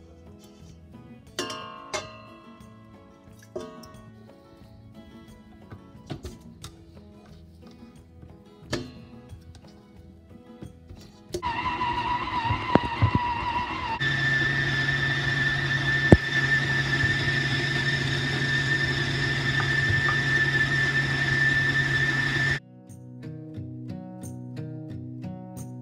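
Soft background music with plucked notes, then about halfway through an electric stand mixer's motor starts abruptly and runs steadily with a whine, its paddle beating marzipan dough. Its tone shifts a couple of seconds after it starts, and it cuts off suddenly shortly before the end, leaving the music again.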